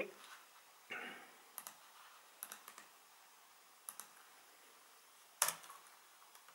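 Typing on a computer keyboard: a handful of scattered key clicks, with one louder keystroke near the end.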